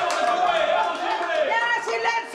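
Voices talking over one another, with crowd chatter.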